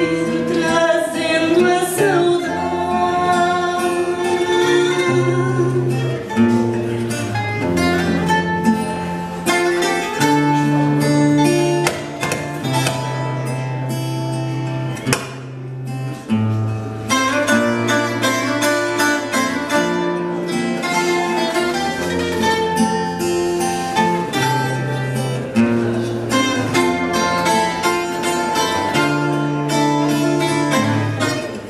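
Fado accompaniment on Portuguese guitar and classical guitar: plucked melody over steady bass notes, playing on without a pause.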